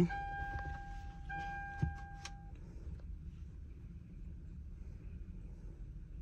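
A steady electronic beep tone sounds, breaks off about a second in, sounds again and stops about two and a half seconds in, with a small click near the end of it. After that only a faint low hum remains.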